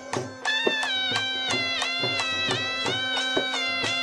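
Live folk dance music: a nasal reed pipe plays a wavering, ornamented melody over a steady drone, while dhol drums keep a regular beat. The sound dips briefly at the very start.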